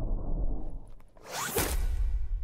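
A fast swishing whoosh about a second in, sweeping upward in pitch and cutting off just before the end. Under the first second is the fading rumble of a low hit.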